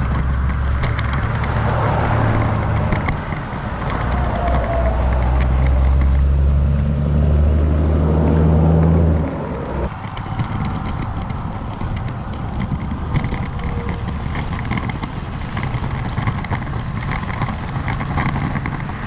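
Wind rumbling across the microphone of a camera on a moving road bike, with road traffic mixed in. About nine seconds in, the heavy rumble cuts off suddenly and lighter wind and road noise carry on.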